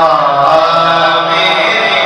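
A man's voice singing a naat into a microphone, drawing out long held notes that slide in pitch from one to the next.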